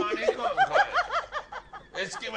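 A person laughing: a quick run of about six high-pitched ha's, each rising and falling, over about a second, then dying away.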